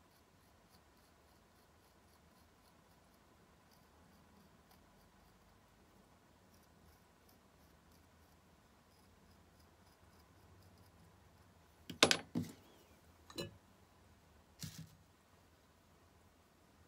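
Faint, fine scratching of a thin metal scoring tool crosshatching leather-hard clay on a mug wall. About three quarters of the way through come a few sharp clicks and knocks, the first the loudest.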